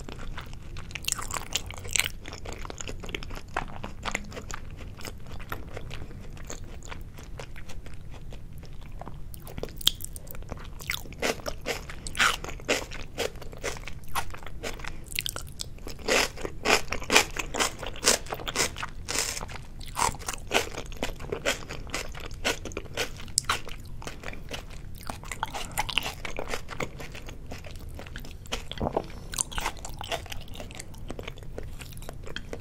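Close-miked chewing of soy-sauce-marinated salmon sashimi: a steady run of short wet clicks and crunches from the mouth, busiest in the middle.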